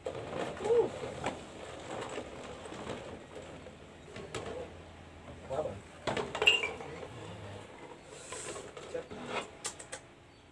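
A mixed soft drink being dipped out of a large plastic jar with a mug and poured into a glass. There is liquid splashing, and the mug and glass click and knock against the jar and the table a few times.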